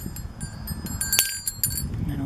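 Small vintage bells on a strand jingling as they are handled. There is a cluster of high ringing tones with a sharper clink about a second in, over a low rumble.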